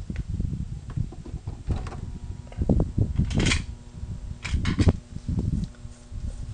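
Knocks and handling rustles as a homemade MOSFET induction heater circuit is switched on and starts drawing current. A faint steady hum comes in about two seconds in while the circuit runs.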